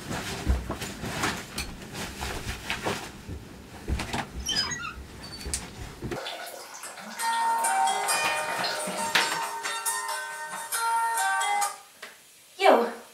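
Rustling and knocking of bedding and handheld movement for about six seconds. After a sudden cut, a melody of clear, steady, bright notes plays.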